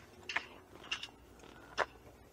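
Three short, dry crunches spread over two seconds, the last the loudest. The listeners take them for a loud leaf but are not sure of it.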